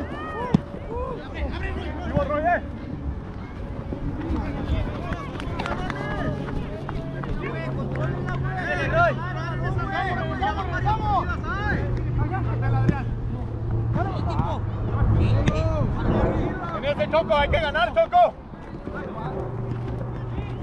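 Indistinct shouting from footballers across an open grass pitch during play, with a low steady hum underneath through the middle and again near the end.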